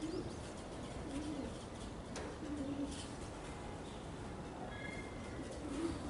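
A dove cooing softly: a few short, low coos in the first three seconds, over faint steady background noise.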